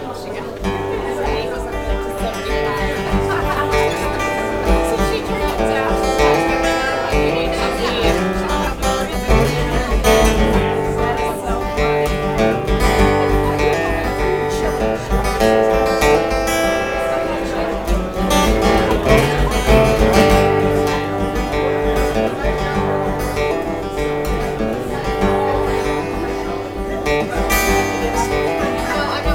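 Acoustic-electric guitar strummed in a steady rhythm through a PA, playing the instrumental introduction of a song before the vocals come in.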